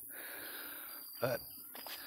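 Mostly a pause in a man's talk, with faint steady background hiss. About a second in, he says one short word.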